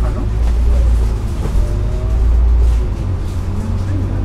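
Double-decker bus running along the road, heard from the upper deck: a heavy low engine rumble with a drivetrain whine whose pitch climbs near the end as the bus picks up speed.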